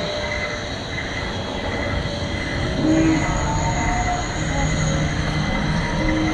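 Roller coaster train running on its track: a steady rumble with a high ringing hum over it, loudest about three seconds in.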